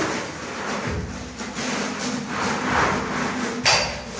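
A heavy floor-covering sheet being dragged and rolled up on a bare concrete floor: a continuous scraping rustle, with one sharp knock just before the end.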